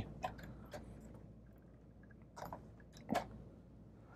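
A few faint, short clicks of plastic LEGO pieces as a hand handles the built First Order Star Destroyer model, the two louder ones in the second half.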